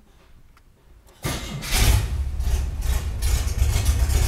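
Chevrolet Opala Diplomata's 4.1-litre straight-six running with no exhaust system fitted, starting up suddenly about a second in and then running loud and open with a strong low rumble.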